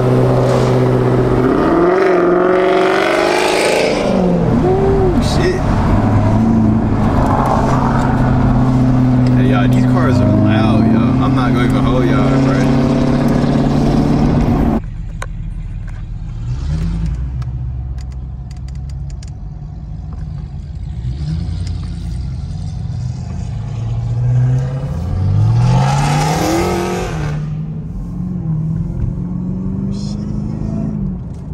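In-cabin sound of a Chevrolet Camaro ZL1's supercharged 6.2-litre V8 driving in traffic. The first half is louder, with steady held pitches that change in steps; after an abrupt change about halfway, the engine note rises twice as the car accelerates, briefly just after the change and longer near the end.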